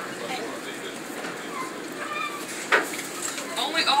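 Steady running noise inside a moving passenger rail car, with faint voices in the background and one sharp knock a little past the middle.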